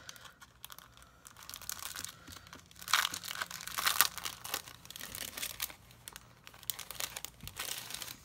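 Clear plastic cellophane sleeve crinkling as it is opened and the sticker kit inside is handled, in irregular crackles that are loudest about three to four seconds in.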